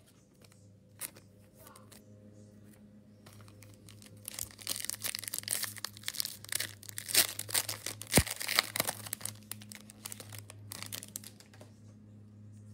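Plastic trading-card sleeve crinkling as a card is slid into it, a dense crackling from about three seconds in until near the end, with one sharp click about eight seconds in. A low steady hum runs underneath.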